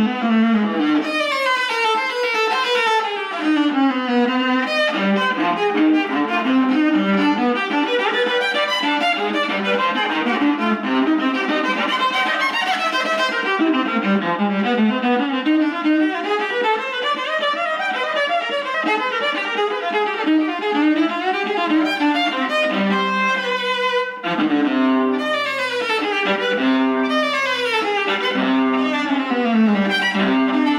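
Solo viola bowed in fast, unbroken runs and arpeggios sweeping up and down the range, reaching down to its low strings near the end.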